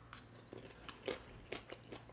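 Faint chewing of a mouthful of food taken from a fork, with a few soft, short clicks scattered through it.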